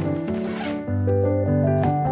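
Gentle piano background music, with a short rustle of kraft paper and plastic bag being handled in the first second.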